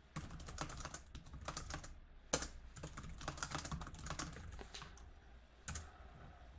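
Typing on a computer keyboard: a quick, uneven run of keystrokes for about five seconds, then a brief pause and a few more keystrokes near the end.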